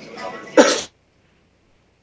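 A person coughing, ending in one loud, sharp cough about half a second in.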